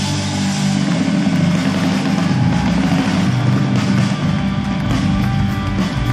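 Live rock band playing loud, with electric guitars, bass guitar and drums.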